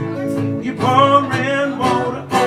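Live blues performance: two acoustic guitars played together under a male voice that comes in about a second in with a long, wavering held note.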